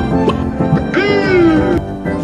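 Cartoon background music with plucked notes, and about a second in a drawn-out 'yee' cry from a cartoon voice that falls slowly in pitch and lasts under a second. This is the 'Yee' dinosaur meme call.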